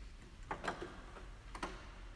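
Slow footsteps of people walking in procession: a few sharp, irregular clicks of shoes, two close together and then one about a second later.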